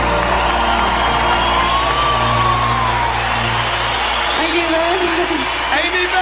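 The closing seconds of a slow song: a held bass note and a gliding melody line, the bass dropping out about four seconds in, then a voice coming in over the music near the end.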